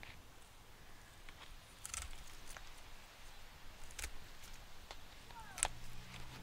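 Hand pruners snipping through plant stems, cutting back top growth: four sharp clicks, about two seconds apart.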